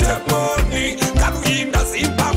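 Ugandan pop song with a steady kick drum about twice a second under a melodic backing.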